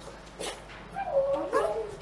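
A young child's wordless vocalization: a wavering, high-pitched whine lasting about a second, near the end. It is heard played back from a classroom video over the hall's sound system.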